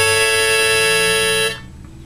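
A harmonica in a neck holder sounding one long held note, blown out around the fifth hole as a demonstration; it stops about one and a half seconds in.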